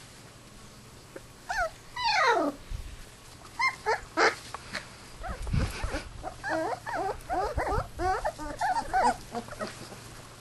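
Australian kelpie puppies whimpering and yelping: a long falling yelp about two seconds in, then a quick run of short high-pitched whimpers through the second half.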